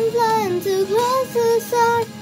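A girl singing, a run of short held notes that slide up and down in pitch.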